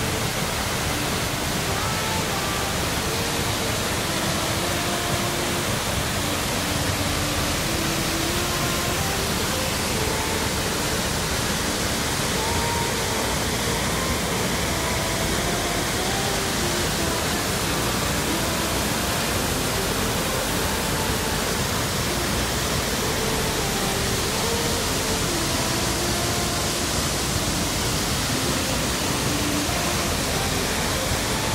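A waterfall crashing into its plunge pool, a steady, unbroken rush of water noise.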